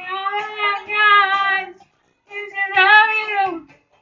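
A man singing unaccompanied in a high voice: two long, held phrases, each about a second and a half, with a short silent break between them about two seconds in.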